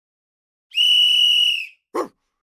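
A single high-pitched whistle blast, steady for about a second and dropping slightly in pitch as it ends, starting a little under a second in; a brief lower sound follows right at the end.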